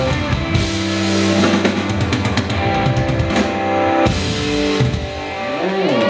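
Live rock band of drum kit and electric guitars playing the closing bars of a song, with held chords, cymbal and drum hits, and a big accented hit about four seconds in.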